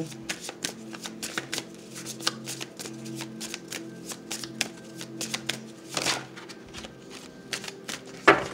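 A deck of oracle cards being shuffled by hand, a quick run of soft card flicks and slaps, with a longer rustle about six seconds in. Quiet background music with sustained low tones plays underneath.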